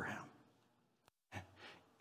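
A man's word trailing off, then a pause and a short audible breath drawn in before he speaks again.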